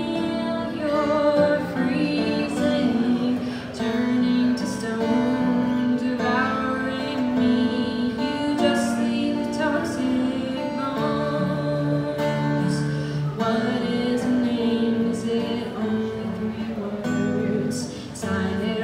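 A woman singing while playing an acoustic guitar in a live solo performance.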